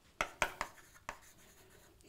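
Chalk writing on a blackboard: four short, sharp chalk strokes and taps, the last about a second in.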